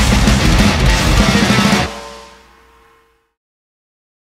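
Metal band recording with drum kit and guitars playing at full tilt, then the song ends abruptly nearly two seconds in. A single ringing note is left to die away over about a second and a half.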